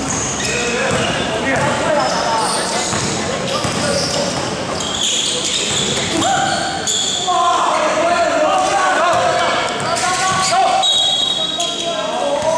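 A basketball being dribbled on an indoor court, bouncing repeatedly, under the shouting and calling of players and spectators in the gym.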